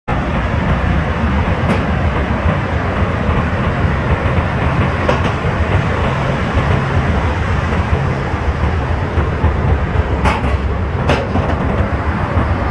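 Ocean surf and wind buffeting the microphone: a steady, loud rushing noise with a heavy low rumble and a few faint clicks.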